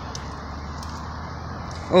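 Steady low rumble of distant road traffic, with a few faint clicks and rustles as a plastic wheel trim is turned over in the hand.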